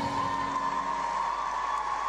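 Crowd applauding and cheering, with a steady tone running under it.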